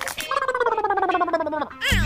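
A comic warbling, voice-like wail that slides slowly downward for about a second and a half, after a short knock at the start.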